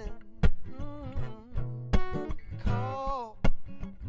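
Small-bodied acoustic guitar strummed with sharp percussive attacks and low bass notes, with a wordless sung line rising and falling over it a few seconds in.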